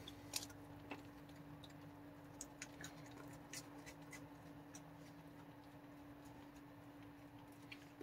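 Near silence with a faint steady hum. A few faint, scattered ticks and clicks, mostly in the first half, come from a raccoon chewing and handling its food.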